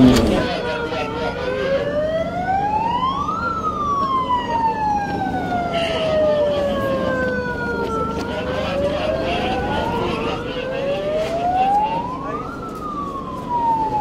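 Police vehicle siren in a slow wail, its pitch rising and falling twice over several seconds each sweep, above general street and crowd noise.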